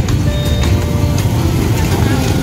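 Motorbikes and scooters running close by on a crowded street, with people's voices in the background and music over it.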